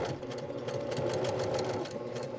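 Sewing machine running at a steady speed, stitching a seam through layered cotton fabric: an even motor hum with rapid, regular clicking of the needle.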